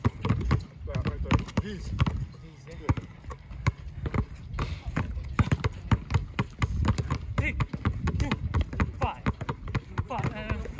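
Two basketballs dribbled low and fast at the same time on brick pavers: a quick, uneven run of sharp bounces, a few every second.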